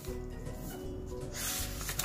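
Paper pages of a handmade junk journal being turned and brushed by hand, with a papery rubbing swish about a second and a half in.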